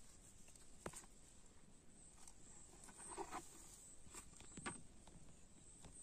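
Near-silent rural outdoor background with a few faint clicks and knocks, about a second in and again near five seconds, and a short faint call about three seconds in.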